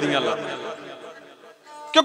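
A male dhadi singer ends a sung line, his voice falling in pitch and dying away over about a second and a half.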